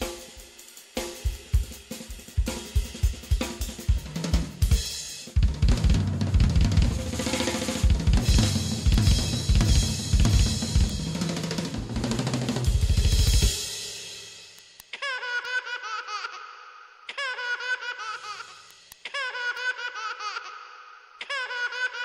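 Opening theme music of a TV drama: a busy drum-kit passage with snare, bass drum and cymbals, building to a dense roll, then about fourteen seconds in it gives way to a pitched melody in short repeated phrases without drums.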